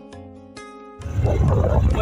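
Soft background music with a light, quick beat, cut off about a second in by a much louder low rumble of wind buffeting the microphone on a moving motorcycle.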